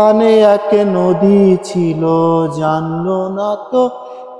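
A man singing a Bengali song without accompaniment, holding long, drawn-out notes with a few brief breaks for breath.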